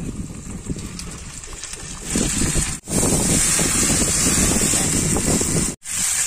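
Marinated pork neck frying in butter in a nonstick pan, sizzling steadily; the sizzle gets much louder about two seconds in and briefly cuts out twice.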